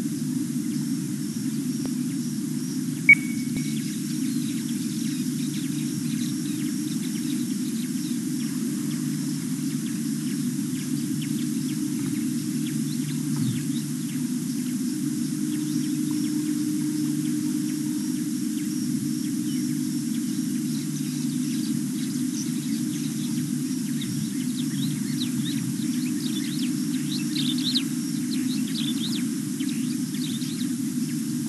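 Small birds chirping in the bush, the chirps coming more often near the end, over a steady low hum. A single sharp click about three seconds in.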